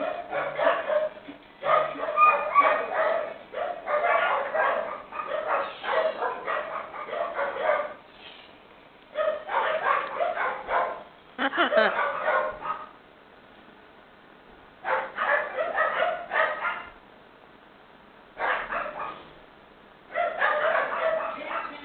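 Blue-and-gold macaw chattering in bursts while its head is being scratched: a long run of chatter over the first eight seconds, then four shorter bursts with quiet pauses between.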